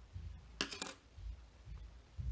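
Wooden craft sticks clicking against one another as a stick is drawn from the cup: a few quick light clicks just before a second in.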